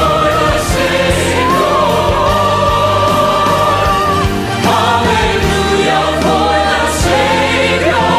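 A choir sings with instrumental accompaniment in a gospel-style Easter choral anthem. The choir holds one long note about two to four seconds in, then moves on in shorter phrases.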